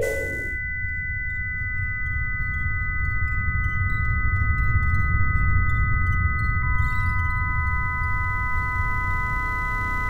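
Designed electronic soundscape: steady pure tones stack up one after another, two starting together, a third joining about a second in and a lower fourth near seven seconds in, over a constant low rumble. Faint scattered ticks come through during the first two-thirds.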